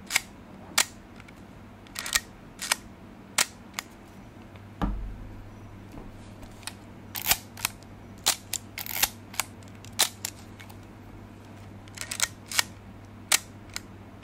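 Shutter releases of a Leica MP and a Voigtländer R3M rangefinder fired in turn: a series of sharp mechanical clicks, often in close pairs, about a second or so apart. There is a dull thump of handling about five seconds in.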